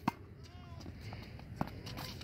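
Tennis racket striking a ball just after the start, then a second, louder sharp tap about a second and a half later, with faint distant voices.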